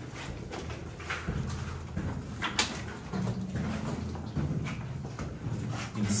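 Footsteps and scuffing of a person walking up a steep, rock-and-rubble floored mine passage, with a couple of sharp clicks or knocks, one about a second in and one midway.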